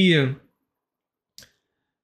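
A man's sentence trails off, then a pause with a single short, faint click about a second and a half in.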